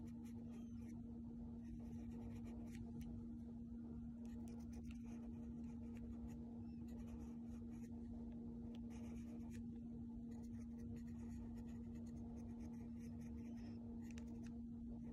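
Pencil scratching on translucent tracing paper in short, uneven strokes as lines of a design are traced. A steady low hum runs underneath.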